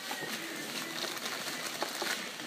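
Clear plastic packaging rustling and crinkling as it is handled and opened, with scattered small crackles.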